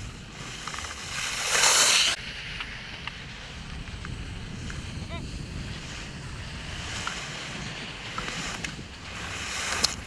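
Wind buffeting the microphone with a steady low rumble, and the hiss of slalom skis carving and scraping the snow as racers pass close. The loudest scrape builds from about a second in and cuts off sharply just after two seconds; another builds near the end.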